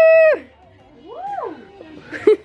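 A high girl's voice holds a loud, steady sung note that stops about a third of a second in. About a second in comes a softer vocal 'ooh' that slides up and back down in pitch, a wordless hoot during a catwalk walk.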